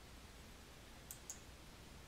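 Two quick computer mouse clicks, about a fifth of a second apart, a little over a second in, over near-silent room tone.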